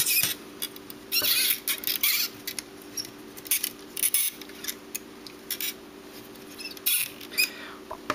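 Plastic Lego pieces clicking, scraping and rattling in short irregular bursts as the arms and gun of a Lego robot are handled and posed, over a steady low hum.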